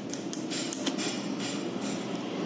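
Irregular light clicks and taps of hard plastic being handled, about four a second, over a steady low background noise.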